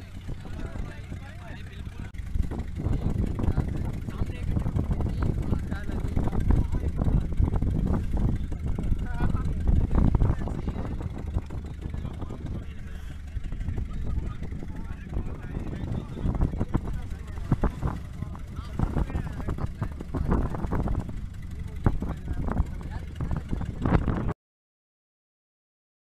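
Indistinct voices of people over a loud, rumbling noise that goes on throughout.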